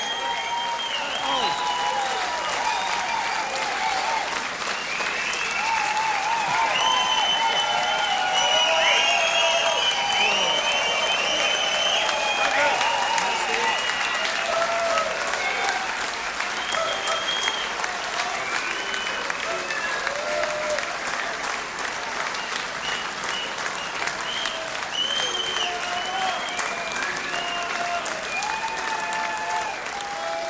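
Concert audience applauding and cheering at the end of a show, with many voices shouting over the clapping. The cheering is fullest in the middle and eases slightly toward the end.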